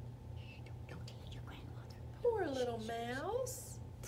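A woman's whispering, then one long voiced sound-effect call about two seconds in that dips in pitch and swoops back up.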